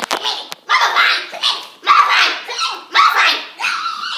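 A child barking like a dog: a quick string of short, high yapping barks, about two a second.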